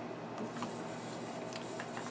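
Quiet room hiss with a few faint soft clicks, as a tobacco pipe is puffed and then taken from the mouth and set down.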